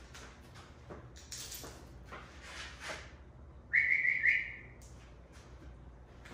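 Flip-flop footsteps slapping on a rubber floor as someone walks. About four seconds in comes the loudest sound, a short, high, whistle-like tone in two joined parts, the second a touch higher.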